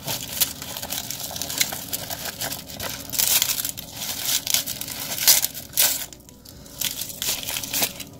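Clear plastic wrapping crinkling and rustling in irregular bursts as a small wrapped item is unwrapped by hand, going quieter about six seconds in.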